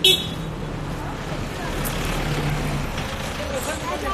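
Outdoor road traffic noise, a vehicle engine humming more strongly for about a second midway, heard on a phone held by someone walking. A sudden loud bump on the microphone right at the start.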